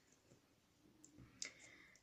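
Near silence: room tone, with two faint short clicks about halfway through.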